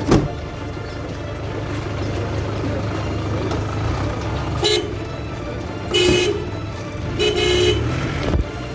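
A car horn sounds three times, a short toot followed by two longer blasts, over the steady low rumble of a vehicle; a sharp thump comes right at the start.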